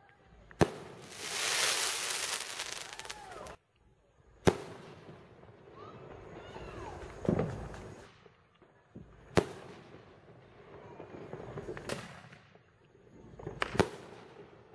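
Reloadable firework shells fired one after another: sharp bangs of launches and bursts a few seconds apart, about six in all, the last two close together near the end. A few seconds of dense crackling hiss follows the first bang.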